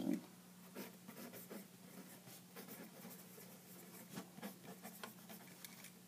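Faint handwriting on paper: short, irregular scratching strokes, over a steady low hum.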